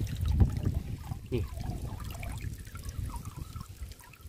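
Water trickling and dripping out of a fine-mesh hand net just lifted from shallow muddy water, with a low rumble of handling noise during the first second or so.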